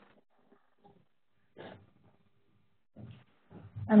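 A near-silent pause on a conference-call line, broken by a few faint, brief sounds about a second and a half in and again about three seconds in; a voice starts up right at the end.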